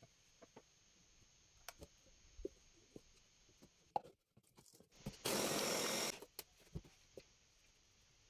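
Electric mini chopper, its motor head set on a stainless-steel bowl, run in one short burst of about a second, chopping onion, carrots, celery and garlic small. Light clicks and knocks come from handling the bowl and motor head around it.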